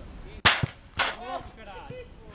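A football struck hard: two sharp bangs about half a second apart as the ball comes in on the near goal.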